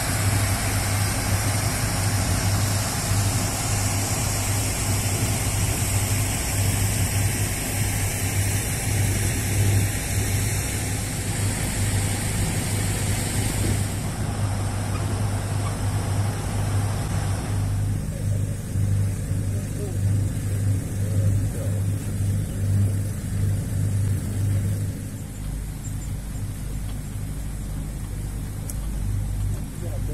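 Tour boat's engine running steadily while under way: a constant low hum beneath a rushing hiss that drops away a little past halfway.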